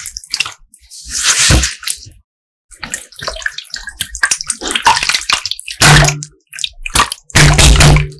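Glittery slime squeezed and kneaded by hand, making wet squelches and squishes in irregular bursts. The loudest squelches come about six seconds in and near the end.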